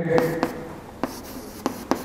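Chalk writing on a chalkboard: a handful of sharp taps and short strokes as the chalk strikes and drags across the board, several of them roughly half a second apart.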